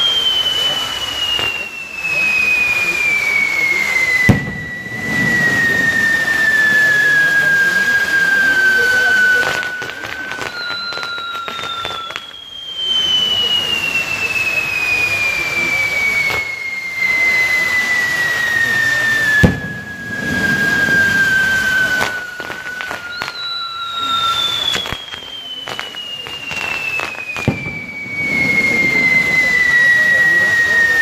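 Firework castillo burning: spinning spark-throwing wheels make a steady loud hiss, over which whistling fireworks sound three times in turn, each a long whistle sliding down in pitch over about ten seconds. Two sharp bangs come about four seconds and nineteen seconds in.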